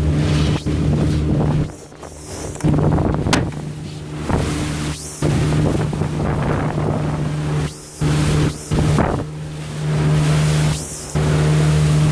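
Outboard motor running steadily at cruising speed as a small boat pushes through choppy water, with wind on the microphone and rushing water. The sound drops away briefly several times.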